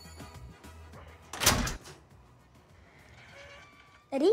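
Background music fading out, then one short, loud metallic rattle of a metal grille gate at a flat's door being opened, followed by quiet room tone.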